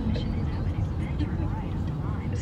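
A car driving, its steady low road and engine rumble heard from inside the car, with faint talk over it.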